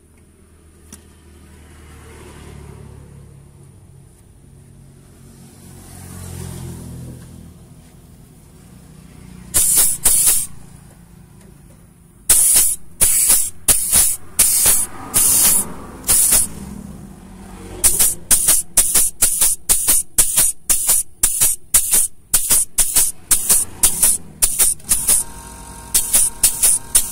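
An impact wrench drives the threaded plunger of a homemade grease pump, made from an old shock absorber tube, forcing oil into a clogged grease nipple on a truck's leaf spring shackle. It runs in short hissing bursts: one about ten seconds in, a cluster a few seconds later, then a steady run of about two bursts a second through the rest.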